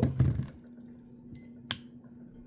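Olympus OM-4T 35mm SLR being worked by hand: a brief faint electronic beep, then a single sharp click of the shutter firing about a second and a half in.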